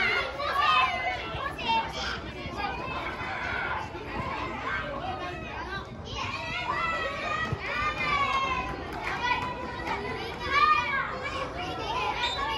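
Children shouting and calling out, many high voices overlapping with no let-up.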